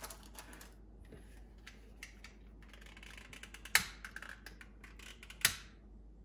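Long-nosed gas utility lighter clicked twice to light an incense stick: two sharp clicks about a second and a half apart, among lighter ticks and rustles of handling.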